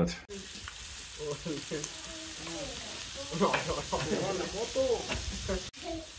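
Chopped meat and onions sizzling in a large round steel disc pan (discada) over a wood fire, a steady frying hiss. People are talking faintly in the background.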